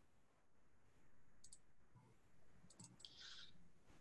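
Near silence with a few faint computer mouse clicks: a quick double click about a second and a half in and a few more near the three-second mark, followed by a brief soft hiss.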